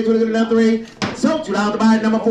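An auctioneer's bid-calling chant, a fast patter held on one steady pitch. About a second in it breaks off with a sharp click and a brief pitch glide, then picks up again on the same note.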